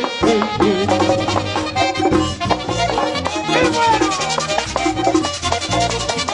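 Live merengue típico band playing an instrumental passage with no singing: button accordion leading over a fast, steady percussion beat, with horns.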